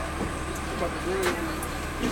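Inside an MBTA Red Line subway car: a steady low rumble of the car under passengers' voices talking in the background, with one sharp click a little past halfway.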